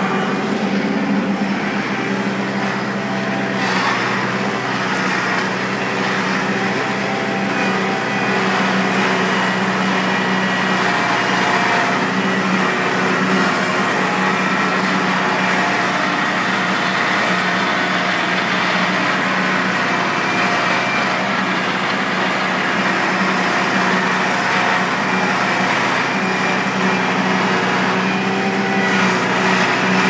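Kubota L4400 tractor's four-cylinder diesel engine running at a steady pitch under heavy load while dragging a large tree, the weight enough to lift the front wheels off the ground.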